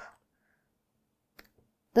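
Near silence in a small room between spoken phrases, broken by one faint short click about one and a half seconds in.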